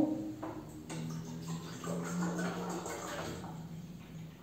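Water poured from a plastic bottle into a cup, heard as a faint, steady trickle.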